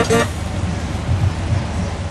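Lorry-mounted fairground organ music breaks off a moment in, leaving steady low rumbling background noise without any tune.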